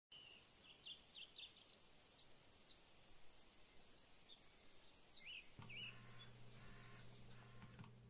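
Faint birdsong: several birds giving short chirps, with a quick run of about six rapid notes around the middle. A low steady hum starts suddenly about five and a half seconds in and continues under the birds.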